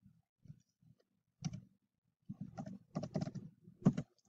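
Computer keyboard keystrokes, fairly faint: one key about a second and a half in, then a quick run of keystrokes over the last second and a half as a number is typed into a spreadsheet and entered.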